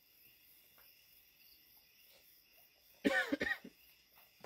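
A person coughs a few times in quick succession near the end, after about three seconds of near quiet.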